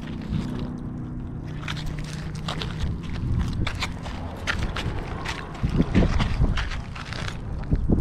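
Wind rumbling on the microphone, with irregular clicks and scuffs from footsteps on the concrete bank and from handling the baitcasting reel while a hooked bass is played.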